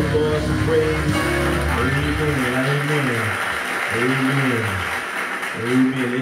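A worship backing track with steady held chords and bass, which drops away about two and a half seconds in. After that a man's voice into a microphone holds long, slowly rising and falling sung notes.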